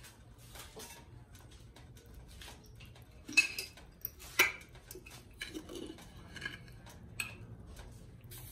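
Scattered clinks and knocks of kitchen utensils and dishes being handled, the two loudest about three and a half and four and a half seconds in.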